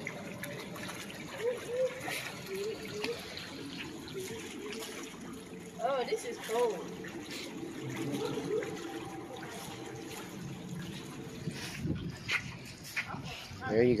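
Shallow seawater trickling and lapping among rocks at the edge of a concrete seawall, with faint voices now and then.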